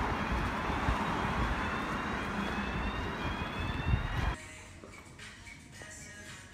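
Outdoor street noise with wind rumbling on a phone microphone and a faint, slowly rising whine. About four seconds in it cuts off abruptly to quieter indoor room sound with faint music.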